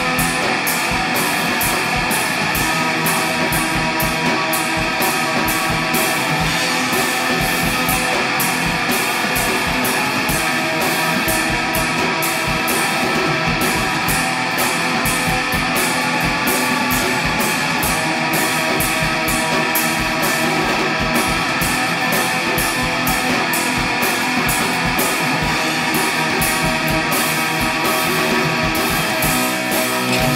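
Shoegaze rock song in a demo recording: a dense, steady wall of strummed, distorted electric guitar over a steady beat.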